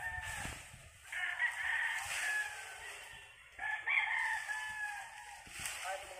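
A rooster crowing twice, each crow lasting about a second and a half, the first starting about a second in and the second a little past halfway, with the tail of an earlier crow at the very start.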